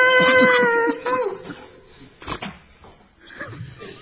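A man's voice holding one long, high sung note into a microphone for about a second; after it stops, only quieter, short scattered sounds follow.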